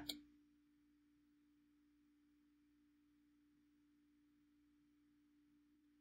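Near silence: room tone with one faint, steady low hum.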